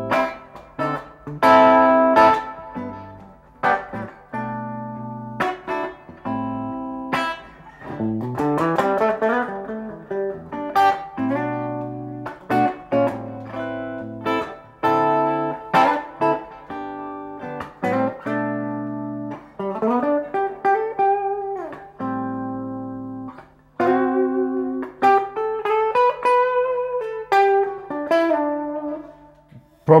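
Gibson ES-335 electric guitar played through a Fishman Loudbox Mini acoustic amp with its master turned down to bedroom level. It plays a mix of chords and single-note lines, with string bends in the second half.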